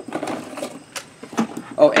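Hands rummaging in a small cardboard box of accessories, with a few light clicks and rustles as parts are moved about.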